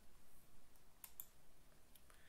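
Near silence with a few faint clicks, about a second in and again near the end, from the slide being advanced on the computer.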